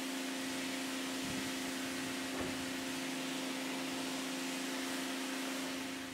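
AVA Smart P60 electric pressure washer running, a steady motor hum under the hiss of its water jet spraying a carpet car mat to blast off mud and loose debris.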